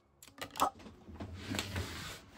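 A small card being handled and set down on a wooden tabletop: a couple of sharp clicks about half a second in, then soft rustling of handling.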